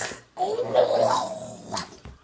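A young boy's loud, rough, drawn-out vocal noise, lasting about a second, followed by a short sharp sound near the end.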